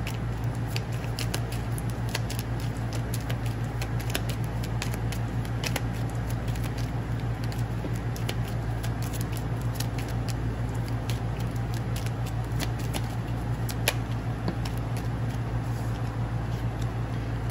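A holographic tarot deck being shuffled by hand: a quick, steady patter of cards clicking and sliding against each other, over a steady low hum.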